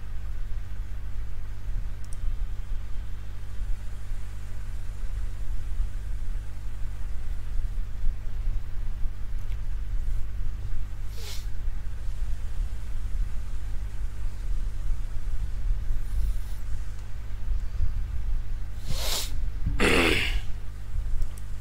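Steady low hum with no speech, with a brief burst of rustling noise about eleven seconds in and two more near the end.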